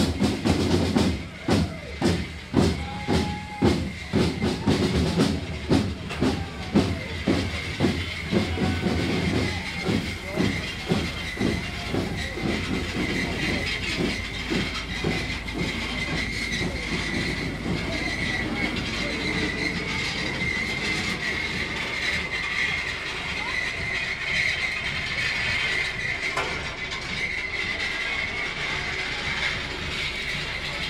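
Street drums beating a steady marching rhythm, about two strokes a second, that fade out about ten seconds in. A steady hiss and crowd noise then remain.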